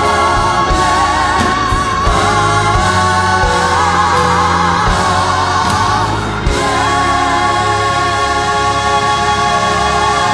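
Live gospel music: a female soloist singing with vibrato, backed by a vocal ensemble and instruments. About six and a half seconds in, the bass drops out and the voices settle into a long held chord.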